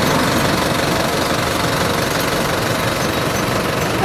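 A pickup truck's engine idling steadily.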